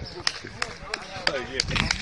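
Young men shouting during a pickup football game, with several short sharp knocks among the shouts.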